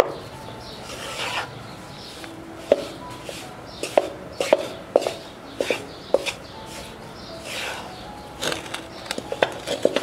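Wooden spatula scraping and knocking against a pan as thick gram-flour (besan) paste in ghee is stirred and roasted. Steady scraping broken by irregular sharp knocks, with a quick cluster of them near the end.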